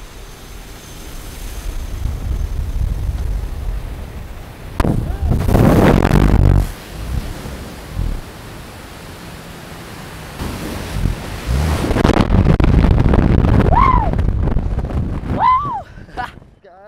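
Freefall wind rushing and buffeting a helmet-mounted camera microphone, swelling into loud surges about five seconds in and again from about ten seconds on. Two short shouts near the end.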